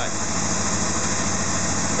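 Honda VFR800's V4 engine idling steadily at about 1,600 rpm, with the vacuum hose pulled off its fuel pressure regulator, making the mixture run richer.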